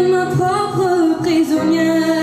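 A young girl singing a sustained, wavering vocal line with vibrato into a stage microphone, over a backing track of steady held chords.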